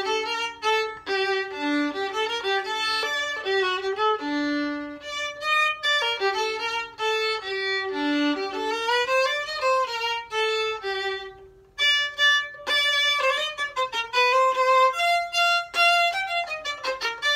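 Solo violin playing a gavotte: a lively run of bowed notes, with a short break in the phrase about two-thirds of the way through.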